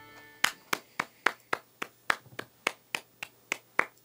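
One person clapping, about thirteen crisp hand claps at an even pace of three to four a second.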